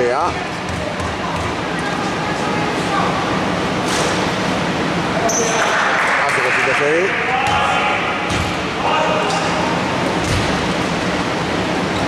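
A basketball bouncing a few times on a wooden court, echoing in a large hall, amid scattered voices of players and onlookers.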